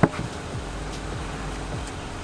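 A sharp click as the latch of an Arctic Zone Titan Deep Freeze hard cooler is released, then the lid being lifted open, over a steady low hum.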